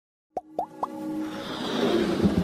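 Synthetic intro sound effects: three quick pops, each rising in pitch, about a quarter-second apart, followed by a rising swell as the intro music builds.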